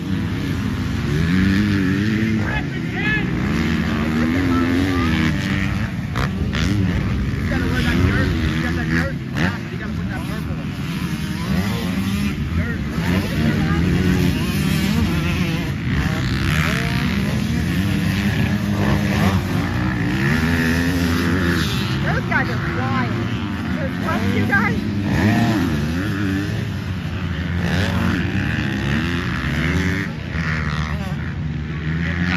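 Motocross dirt bike engines racing around a track, the revs rising and falling over and over as the bikes accelerate, shift and brake for the turns.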